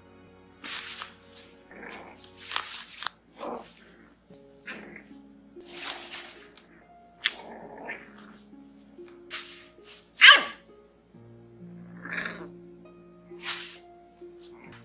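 A tiny bulldog puppy yapping and barking in a string of short calls, the loudest about ten seconds in, amid the rustle of bubble wrap, over background music.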